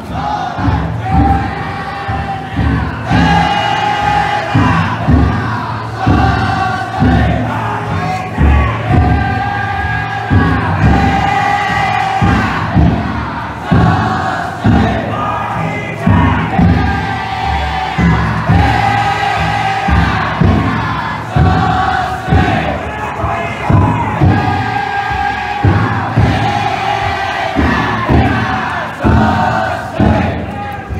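A large team of futon daiko float bearers chanting in unison, in drawn-out calls repeated about every two seconds. Low, regular drum beats from the float's taiko run underneath.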